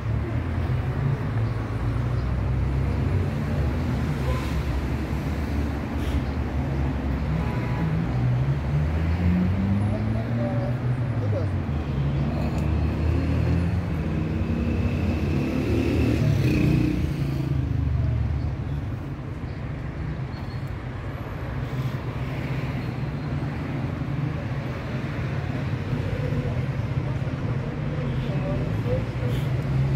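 Street ambience with a steady low rumble and background voices. A vehicle engine is heard for several seconds in the middle, its pitch rising and falling as it passes.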